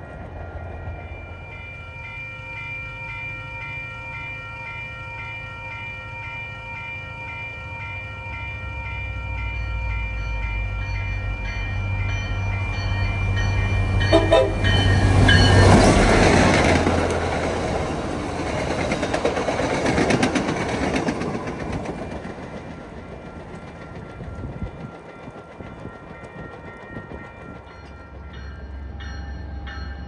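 An MBTA diesel-hauled commuter train approaches with a steady warning signal sounding. The locomotive's engine rumble builds and is loudest as it passes about halfway through, followed by the rush and wheel clatter of the coaches going by, fading after about seven seconds.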